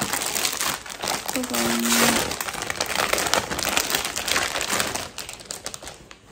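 Plastic packaging crinkling and rustling as a baby clothing set is pulled out and handled, with a short hummed voice about a second and a half in.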